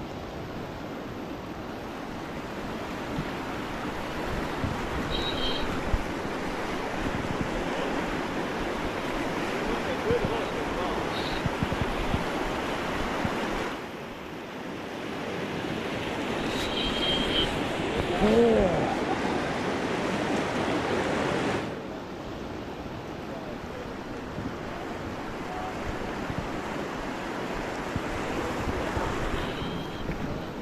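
Rapids of a fast river rushing over a rocky riffle, a steady loud wash of water, with wind buffeting the microphone; the rush drops noticeably about two-thirds of the way through.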